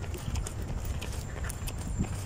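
Jogging footsteps on a paved path, about three a second, with a steady low rumble on the microphone of the moving handheld camera.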